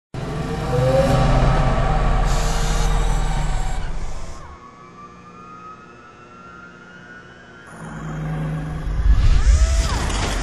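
Motor vehicle traffic, loud for about four seconds, then falling away in the middle while slow rising tones sound, and building up loud again near the end.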